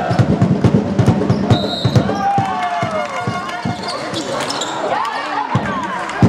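A basketball being dribbled on a hardwood court floor, with short, sharp bounces throughout, and sneakers squeaking on the floor in sliding squeals around the middle and near the end, under voices in the hall.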